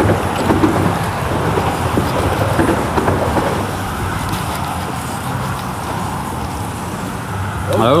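Steady wind and water noise on an open boat in choppy water: a continuous rushing with a low rumble underneath, easing slightly over the seconds.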